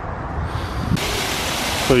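Steady rush of a small waterfall spilling from a canal over a stone wall into a pool, starting abruptly about a second in; before it, a low rumble.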